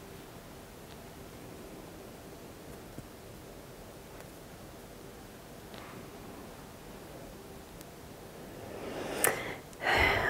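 Low room tone with faint rustling of fingers working through a synthetic wig. Near the end, a quick breath in with a sharp click.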